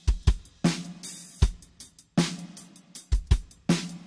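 Playback of a pop-rock song's mix, the drum kit intro: kick and snare hits with cymbals, each hit trailing a little reverb.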